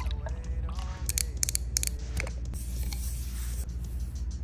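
Background music with sustained low notes. About a second in there is a quick run of sharp clicks, followed later by a soft hiss.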